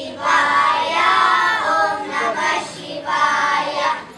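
A group of children singing together in unison, in sung phrases with brief breaths between them.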